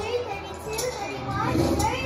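Children's voices chattering and calling out excitedly, with a rising call near the end.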